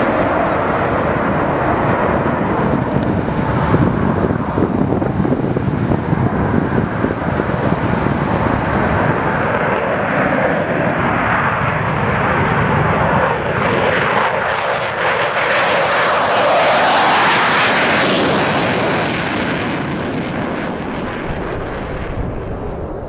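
Jet aircraft engine noise, a steady rush that grows louder and brighter about two-thirds of the way through, then eases off near the end.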